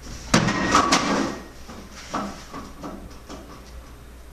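A wooden stage door banged hard twice, about half a second apart, followed by several lighter knocks and thuds.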